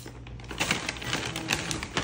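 Rolled oats being scooped from a paper bag with a metal measuring cup and tipped into a ceramic bowl: a run of irregular light clicks and rustles, with a few sharper ticks in the second half.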